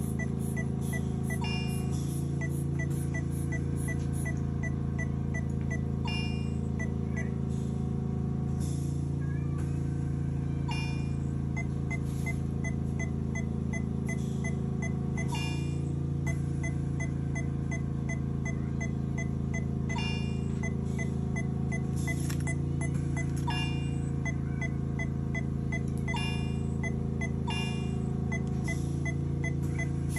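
Electronic veterinary patient monitor beeping rapidly, about three short high beeps a second in runs that pause and resume, with a louder chime-like tone every few seconds, over a steady equipment hum.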